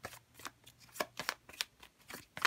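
A deck of oracle cards being shuffled by hand: a quick, irregular run of crisp snaps and slaps as the cards slide and hit against each other.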